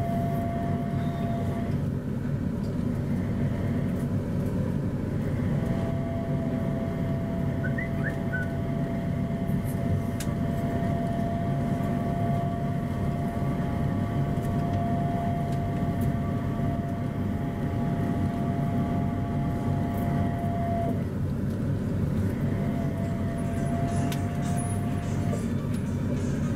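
Punggol LRT rubber-tyred automated train running along its concrete guideway, heard from inside the car: a steady rumble with a single-pitched motor whine that drops out and comes back twice.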